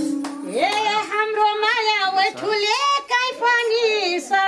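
A woman singing a line of a Nepali rateuli folk song in a high voice, the pitch wavering and sliding through ornaments, with no drum beneath it.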